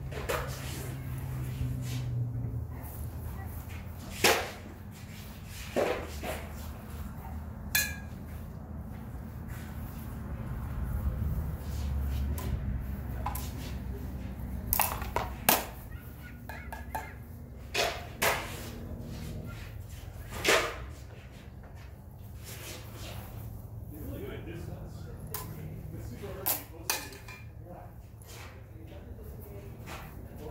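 Steel sparring swords, a rapier and a jian, clashing against each other and against bucklers: about ten sharp metallic clacks scattered through, some in quick pairs, one ringing briefly. Underneath runs a low steady rumble.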